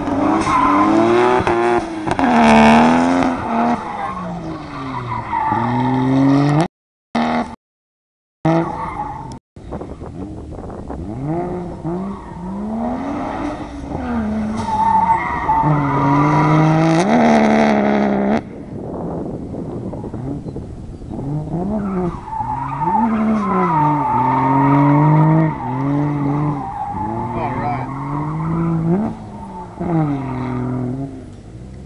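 A car engine revving up and down over and over as the car is thrown through a cone course, with tyres squealing and skidding. The sound cuts out completely a few times, briefly, about a quarter of the way through.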